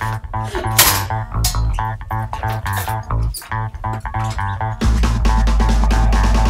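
Background music with guitar, bass guitar and drums playing a steady rhythm; a held low bass note comes in near the end.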